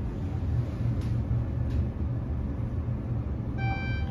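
Inside a gearless traction elevator car travelling up at speed through an express zone: a steady low ride rumble. A short electronic beep sounds near the end.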